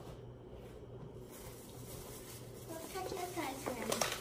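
Dry carrot cake mix pouring from its bag into a plastic mixing bowl: a faint, soft rustle with a low hum underneath.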